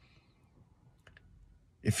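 Near silence in a pause in speech, with a few faint mouth clicks about a second in, then a man's voice begins near the end.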